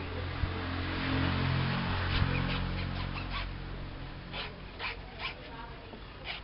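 A low steady hum that fades over the first few seconds, then a run of short scraping strokes, about two a second, as a kitchen knife cuts into a palmyra fruit husk on a wooden board.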